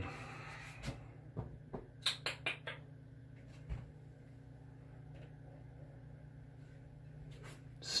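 Light clicks and knocks of a glass aftershave bottle being handled and lifted off a shelf of shave-soap tubs, over a steady low hum. The clicks come in a cluster about two seconds in, with a dull thump a little before halfway and a few more clicks near the end.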